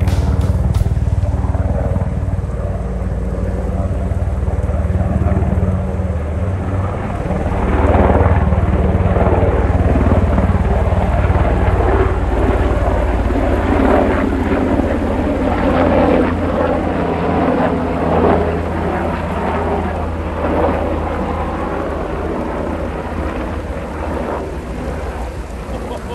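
Military helicopter flying past, its rotor beating steadily and low. The sound is loudest about eight to twelve seconds in, then slowly fades as it moves away.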